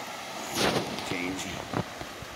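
Steady rushing of fast river rapids. About half a second in there is a brief scuff, then a short grunt, from someone stepping over wet shoreline rocks.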